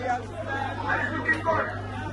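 Spectators' chatter: several voices talking over one another, with a steady low hum underneath.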